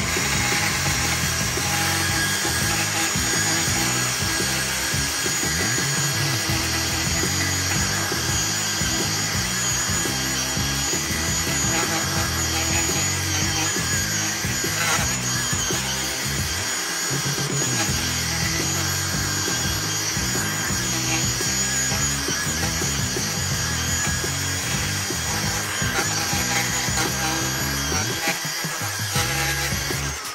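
DeWalt cordless brushless edger running with a steady whine as it cuts an edge through grass and dirt along a sidewalk, at times working a little harder. Background music plays along with it.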